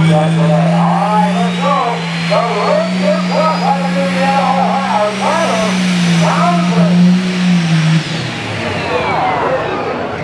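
A John Deere pro stock pulling tractor's turbocharged diesel running hard at full throttle under load, with a high turbo whine that climbs steadily. About eight seconds in, the engine throttles back and the whine falls away.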